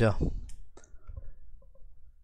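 A man's voice finishes a sentence, then faint computer mouse clicks follow, coming in quick pairs like double-clicks.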